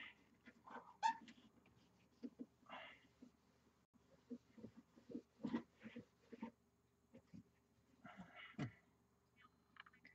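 Faint rubbing of a polishing cloth over freshly painted steel, with a few light clicks and soft squeaks scattered through otherwise near-silent room tone.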